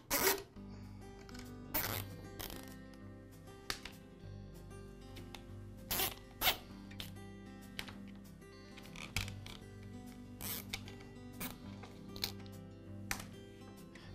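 Nylon cable ties being pulled tight around corrugated plastic wire loom: a series of short ratcheting zips at irregular intervals, over soft background music.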